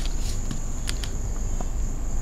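A steady high-pitched insect trill over a constant low hum, with a few faint clicks.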